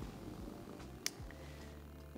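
Faint low rumble of a domestic cat purring close to the microphone, with one sharp click about halfway through.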